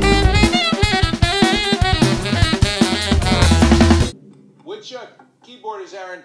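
Band playing uptempo jazz-funk: a saxophone melody over a drum kit and keyboards, loud, then cut off abruptly about four seconds in. Brief speech follows.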